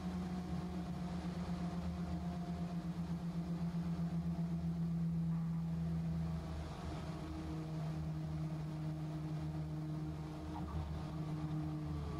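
Diesel engine and pusher propeller of the Raptor experimental aircraft running at low landing power, a steady drone. About halfway through it dips and settles at a slightly lower pitch.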